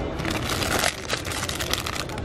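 Clear plastic packaging crinkling as it is handled in the fingers: a dense, irregular run of crackles with a short lull about a second in.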